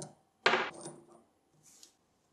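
Steel socket-head cap screws clinking against a machined steel block: a short click, then a louder, ringing metal clink about half a second in.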